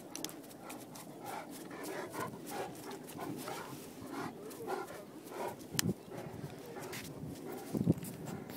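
Newfoundland dogs close by, panting in quick rhythmic puffs as they run up. Two sharp knocks come later, the louder one near the end.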